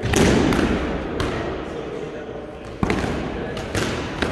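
Sparring swords striking shields and each other in a sword-and-shield bout: a loud knock at the start, two more within the first second or so, then a quick pair about three seconds in, each echoing in a large hall.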